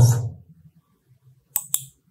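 Computer mouse double-click: two sharp clicks in quick succession about one and a half seconds in, following the end of a spoken word.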